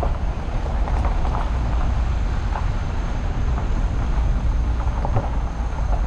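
A vehicle driving slowly over a gravel driveway: a steady low rumble from the engine and tyres, with scattered small ticks of gravel under the wheels.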